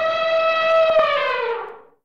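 Elephant trumpeting sound effect: one long call that holds its pitch, then dips and fades out near the end.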